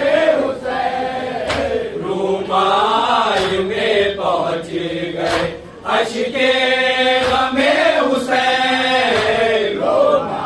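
Men chanting a tarahi salaam, a Shia mourning poem, in unison, with long wavering held notes broken by short pauses. Sharp strikes fall roughly once a second under the chanting.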